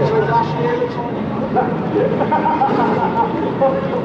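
Indistinct voices chattering close to the microphone, over a steady background of car engines running.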